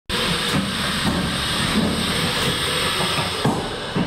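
Funicular car standing in its station: a steady loud hiss over a low rumble, with a few faint knocks.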